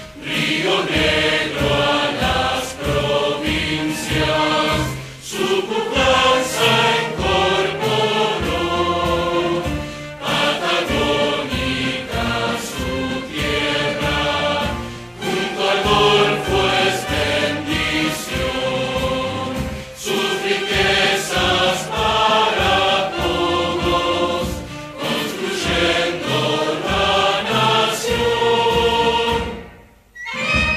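An anthem sung by many voices, in phrases with short breaks about every five seconds; the singing stops at the very end.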